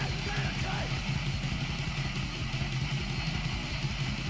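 Anarcho-punk band playing: distorted electric guitar over bass and drums at a fast, driving beat, steady in loudness throughout.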